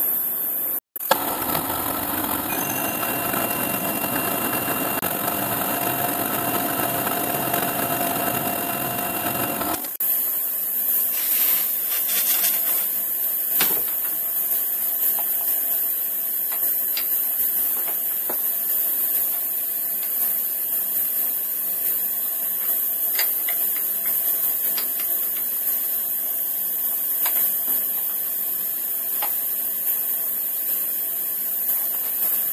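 Milling machine taking a light finishing cut in a metal mould plate: a dense cutting noise with a faint steady whine that stops abruptly about ten seconds in. After that, a steady hiss with scattered light metallic clicks as a metal part is test-fitted into the milled pocket.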